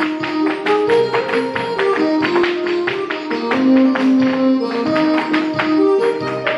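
A recorded traditional Irish set-dance tune with a steady melody, overlaid by rapid sharp clicks of two dancers' hard shoes striking the studio floor in time with the music.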